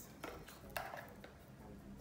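Two brief light knocks, about half a second apart, the second one the louder.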